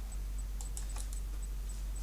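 A few light computer keyboard clicks over a steady low electrical hum.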